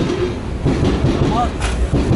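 Elevated Paris Métro train passing on the viaduct overhead, a steady low rumble.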